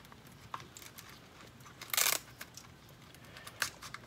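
Hands handling an RC car's wiring and parts: a few light clicks and one short rustling scrape about two seconds in.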